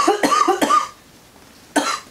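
A woman coughing: a quick fit of several short coughs in the first second, then one more cough near the end. She is still sick with the flu.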